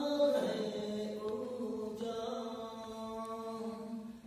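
A man singing a slow worship song into a microphone, holding one long note from about half a second in until near the end.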